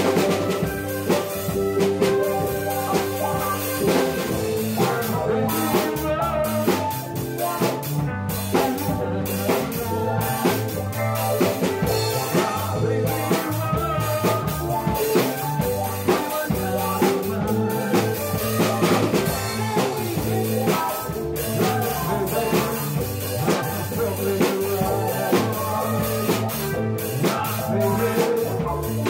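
Background music: a song with a drum kit keeping a steady beat under melodic instruments.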